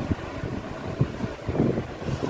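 Rumbling wind and handling noise on a handheld phone's microphone as it is moved about, with a few dull thumps.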